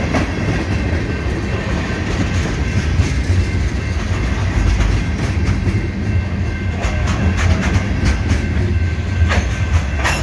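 Freight train passing at close range: steel wheels of tank cars and covered hopper cars rolling over the rail with a steady low rumble and clickety-clack, with several sharper clacks near the end.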